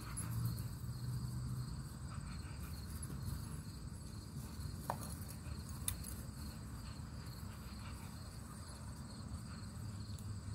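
Insects trilling steadily in a faint high pulsing drone, under a low rumble that is strongest in the first couple of seconds. Two brief clicks come about five and six seconds in.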